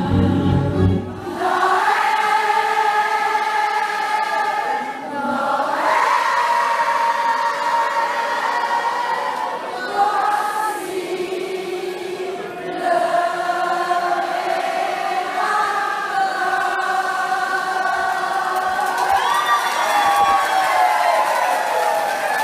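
A large crowd of voices singing together, holding long drawn-out notes that slide slowly up and down in pitch. A low accompaniment drops away about a second in, leaving the voices on their own.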